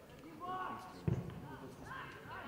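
Players shouting on a football pitch, with one loud, dull thump about a second in.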